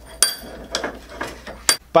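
Metal scooter parts clinking and knocking on a workbench as they are handled: about five sharp knocks, the first with a brief metallic ring.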